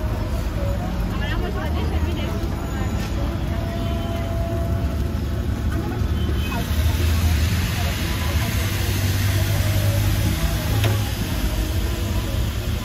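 Busy street background: a steady low traffic rumble with voices talking in the background, and a louder hiss joining about six seconds in.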